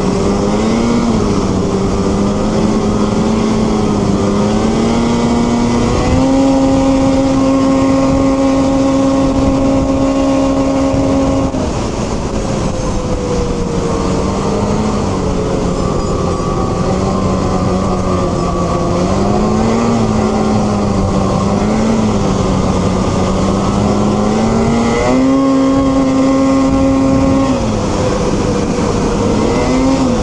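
Two-stroke twin-cylinder snowmobile engine cruising along a trail, its pitch rising and falling with the throttle. It holds a high, steady note for several seconds starting about six seconds in, eases off near the middle, and opens up briefly again near the end. A steady hiss of wind and track runs underneath.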